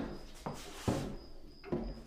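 Soft room sound effects: a few light knocks and clicks with a short rustle about halfway through.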